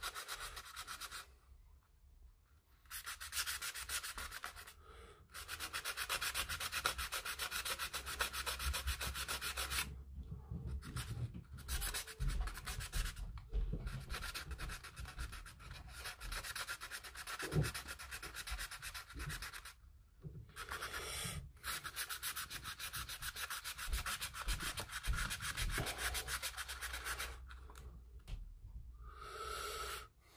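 Hand sanding of dried filler on a plastic model aircraft kit: rapid back-and-forth scratchy strokes in runs of several seconds, broken by a few short pauses, as the filled seams are smoothed flush.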